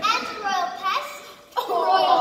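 High-pitched young voices exclaiming, with a short lull just past halfway before the voices come back louder.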